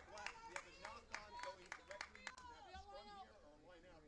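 Faint, distant shouts and calls of rugby players on the pitch, with scattered light clicks.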